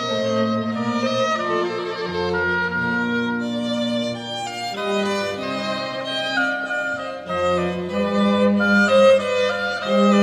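Violin and organ playing slow sacred music: a violin melody in held notes over sustained organ bass and chords.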